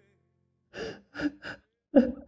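A man sobbing: three short, gasping breaths in quick succession about a second in, then a louder gasp near the end.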